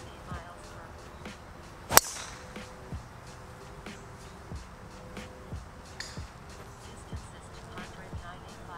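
A driver striking a golf ball off a tee: one sharp crack about two seconds in, with a short ring after it.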